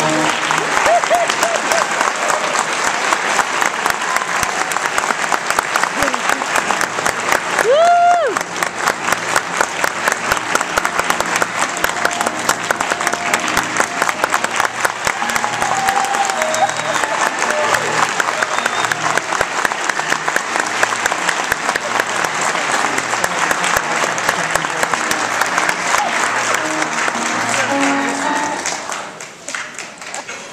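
Audience applauding steadily after a choral performance, with one cheer that rises and falls about eight seconds in. The applause dies away near the end.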